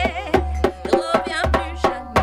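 Hands drumming a quick, even beat on a wooden table, about three to four slaps a second, while a voice sings over it with a wavering melody.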